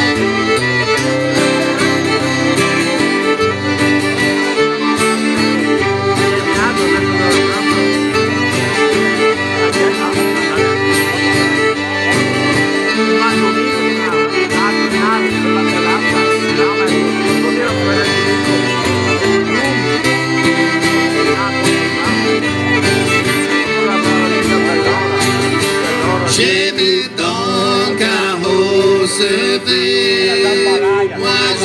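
A live Cajun band playing an instrumental passage: fiddle, diatonic button accordion and strummed acoustic guitar together, with the fiddle carrying the lead.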